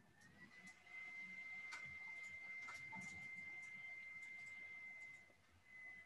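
A faint, steady high-pitched tone that rises slightly at first, holds, and fades out about five seconds in, with a few soft clicks.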